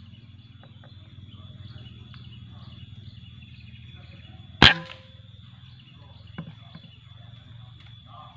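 A single sharp shot from a PCP air rifle, a short crack a little past the middle, over a faint steady background.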